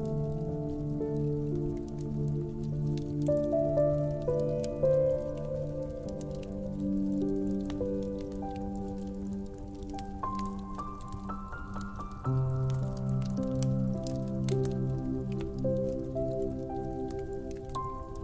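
Slow, soft piano music with held, overlapping notes, over a wood fire crackling with scattered small pops and snaps.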